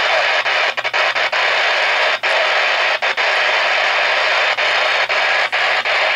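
Loud, steady hiss of static-like noise, broken by several brief dropouts.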